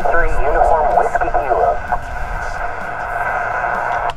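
An amateur radio station answering a QRZ call over HF single-sideband, heard through the transceiver's speaker: a thin, narrow-band voice over steady band noise. The voice stops about two seconds in and only the hiss remains.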